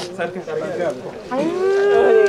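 Chatter of voices, then about a second and a half in a single voice rises sharply into a long, loud, held wail with a wavering pitch: a mourner lamenting as the coffin is lifted.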